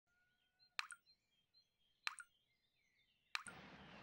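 Water dripping from an old metal tap into a basin: three drops plop about 1.3 seconds apart, each followed at once by a smaller second splash. A faint background hiss comes up just after the third drop.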